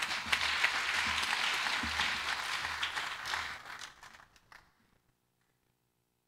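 Congregation applauding, a dense patter of many hands clapping that dies away about four seconds in.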